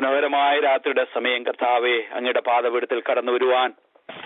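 A voice speaking continuously in Malayalam, stopping briefly near the end; the sound is thin, as if it has come through a phone line.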